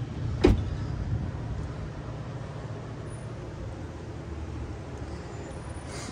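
A car door being shut: one solid thud about half a second in, followed by a steady low street rumble.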